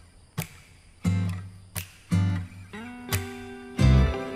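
Background music: strummed and plucked acoustic guitar chords over a low bass, a new chord struck about every half second to second, growing louder near the end.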